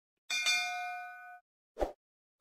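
A single bell-like 'ding' chime sound effect with several ringing tones. It fades out after about a second, and a short dull pop follows near the end.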